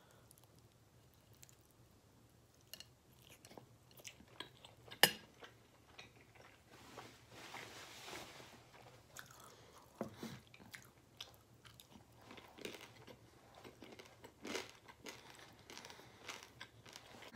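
Close-up chewing of baked penne pasta with crusty, crispy bits, small wet mouth clicks and light crunches scattered throughout. A single sharp click about five seconds in is the loudest sound.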